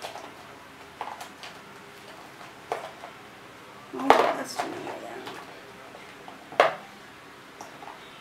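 Rummaging through a box of small skincare sample jars, tubes and packets: scattered clicks and clatters of small containers knocking together, the loudest about four seconds in and another sharp one a little past six and a half seconds.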